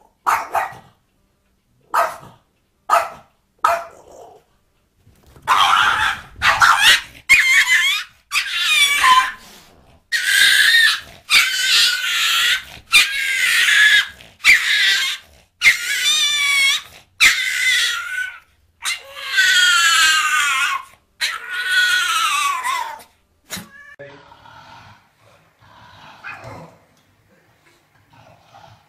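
Dogs barking and yelping. A few short, sharp barks come in the first few seconds, then a long run of loud, pitched barks about a second apart, which fades to fainter sounds near the end.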